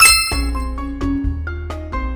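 A bright, bell-like ding at the very start that rings out for about half a second, over background music.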